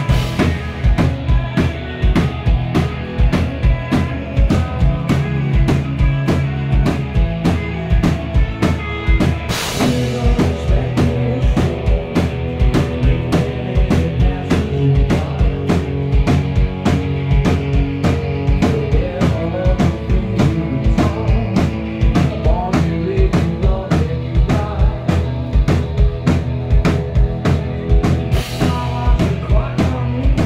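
Live rock band playing loudly: drum kit keeping a steady beat on bass drum and snare under electric guitars and bass guitar, with a cymbal crash about ten seconds in and again near the end.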